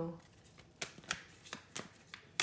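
Tarot cards being shuffled by hand: a run of about five quick, separate card snaps, beginning just under a second in.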